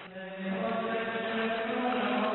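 Slow church chant sung on long, steady held notes, starting just after the beginning.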